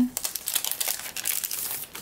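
Clear plastic sleeve crinkling as a planner sticker kit is slid out of it: a run of quick rustles and crackles that fades near the end.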